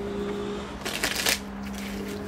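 A tarot deck being shuffled by hand: a quick run of card strokes about a second in, over a steady low hum.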